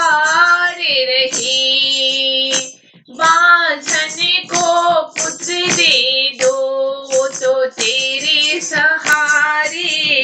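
A high voice singing a devotional Hindi bhajan to the goddess, holding long drawn-out notes over a steady percussion beat, with a brief break about three seconds in.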